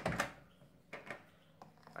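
Microwave-oven door released by its push button and swung open: a sharp latch clunk right at the start, then a small click about a second later.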